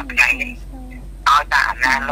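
Speech only: a woman talking, with a brief quieter lull about halfway through.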